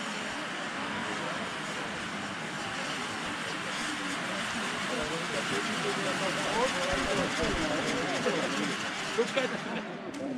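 A ground firework fountain burning with a steady hiss that falls away at the very end as the fountain dies out, with people's voices chattering underneath.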